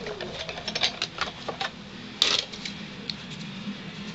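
Hand-cranked die-cutting and embossing machine, a Sizzix Big Shot, being cranked to roll a plastic-plate sandwich with an embossing folder through its rollers: a run of irregular clicks, with a louder click a little past halfway.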